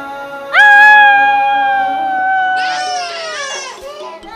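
An infant's wail that swoops up sharply about half a second in and is held for about three seconds, sagging in pitch, then breaks into a wavering cry near the end, over soft background film music.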